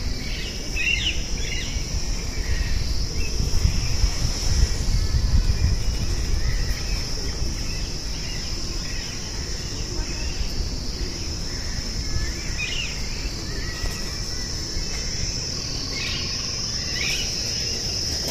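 Steady high-pitched drone of insects with short bird chirps now and then, over a low rumble that swells about three to six seconds in.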